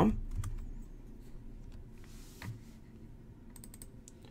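Faint, scattered computer keyboard keystrokes and clicks: a few early on, one alone about two and a half seconds in, and a quick cluster near the end.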